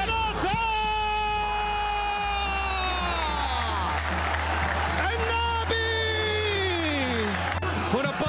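A football TV commentator's drawn-out goal shout: two long held cries, each sliding down in pitch at its end, over crowd noise and background music.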